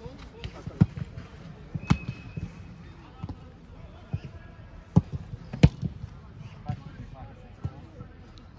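Footballs being struck on an artificial-turf training pitch: a series of sharp thuds, the loudest just under a second in, about two seconds in, and twice between five and six seconds.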